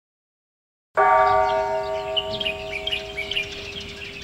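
A bell is struck about a second in and rings on with several steady tones that slowly fade. Small birds chirp over it.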